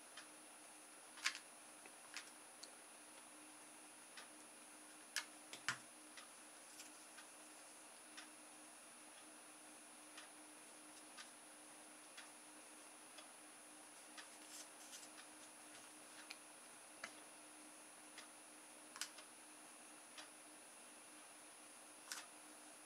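Near silence: room tone with a faint steady hum, broken by small sharp clicks and taps as a hot glue gun, a plastic straw and cardboard are handled. The clicks are sharpest and most frequent in the first six seconds; after that, faint ticks come about once a second.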